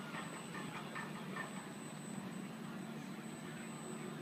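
A radio-controlled boat's brushless motor running at a distance on the water. It makes a steady thin high whine over a low, even hum, and the whine fades about halfway through.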